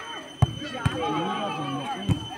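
A volleyball struck twice by hand in a rally, two sharp slaps about half a second apart, the first the louder, over many voices of spectators shouting and calling.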